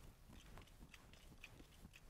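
Near silence with faint, intermittent rubbing of a cloth wiping marker off a glass lightboard.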